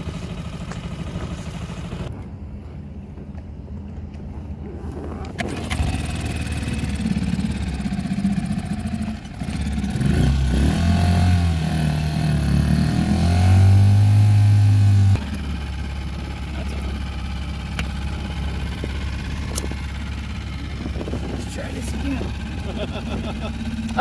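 Small outboard motor running steadily on an inflatable dinghy under way, a low hum throughout, with a louder, deeper stretch for several seconds around the middle.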